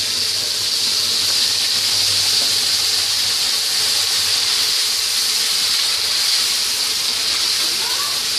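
Ground tomato-onion paste frying in hot oil in a steel kadai, with a loud, steady sizzle.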